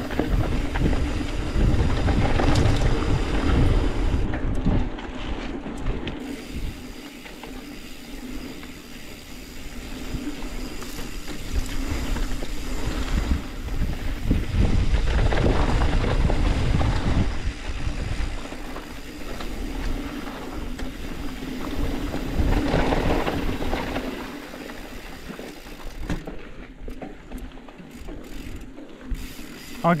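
Mountain bike riding down a dirt trail: tyre noise and the rattle of the bike, with a low rumble that swells and fades several times.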